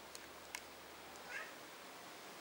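A cat gives one short, faint, high meow about a second and a half in, after two light clicks.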